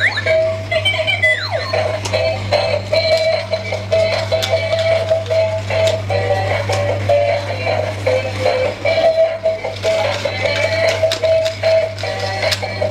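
Battery-powered dancing monkey toy playing its built-in electronic tune, a simple melody of quick steady notes, over a steady low hum with scattered light clicks as it dances.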